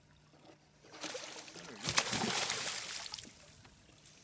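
A hooked pike thrashing at the water's surface. It gives a burst of splashing and sloshing that starts about a second in, peaks with one sharp splash near the middle and dies away after about two seconds.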